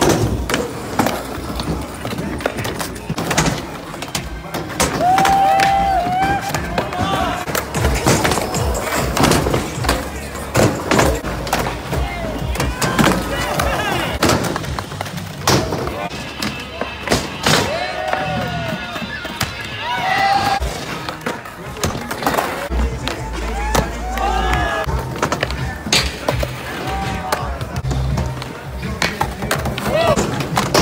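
A song with vocals playing, over skateboard sounds: boards clacking as they pop and land, and wheels rolling on concrete and wooden ramps.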